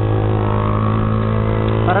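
Z200X motorcycle with an open pipe exhaust, its engine running at a steady note while cruising, recorded on the bike.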